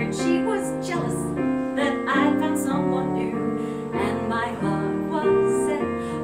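Live piano accompaniment to a musical theatre song, with a woman's singing voice over it.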